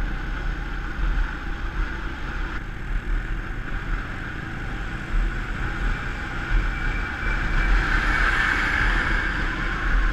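Motorcycle engine running while riding, under rumbling wind buffeting on the camera's microphone, a little louder in the second half.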